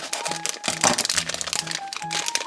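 A shiny plastic blind-bag packet crinkling as it is snipped open with scissors and handled, with a sharp crackle just under a second in. Background music plays under it.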